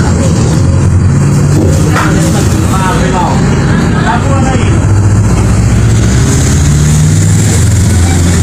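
Motor vehicle engine running steadily, heard from inside the cabin while driving, with people's voices talking indistinctly in the middle.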